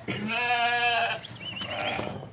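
A lamb bleating: one long, wavering bleat of about a second, followed by a fainter, higher wavering call near the end.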